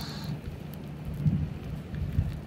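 Shallow tide-pool water lapping and trickling around a hand net, with scattered small drips and low bumps as the net is moved.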